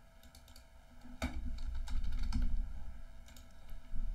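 Typing on a computer keyboard: a short, fairly quiet run of key clicks starting about a second in, with one sharper click near the start of the run, as a short word is typed in.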